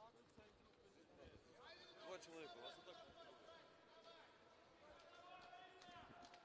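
Near silence with faint distant voices calling out, once about two seconds in and again near the end, and a few faint soft knocks.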